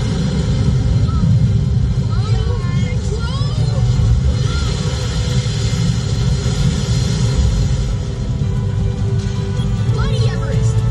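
Steady low road and engine rumble inside a moving Mercedes-Benz car's cabin, with faint music and voices over it.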